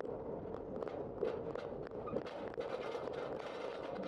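Steady wind and rolling noise on a bicycle-mounted camera, with frequent rattling clicks from the bike as it crosses railroad tracks and rough, cracked pavement, most dense in the second half.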